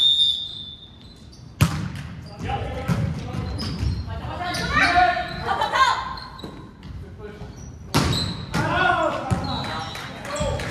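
Volleyball rally in a gymnasium: sharp hits of the ball, one about a second and a half in and a louder one near 8 seconds, with players' calls and shouts echoing in the hall. A short high-pitched tone sounds at the very start.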